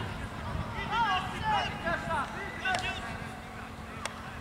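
High-pitched shouts from young footballers calling to each other during play, with a sharp knock, like a ball being kicked, close to three seconds in and another at the very end.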